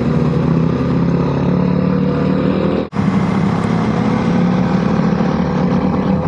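Motorcycle engine running steadily, heard from on board the bike while riding. The sound drops out briefly about three seconds in.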